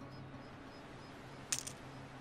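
Online poker client's chip sound effect: a brief clatter of chips about a second and a half in, marking a 100-chip bet going into the pot. A faint steady low tone lies underneath.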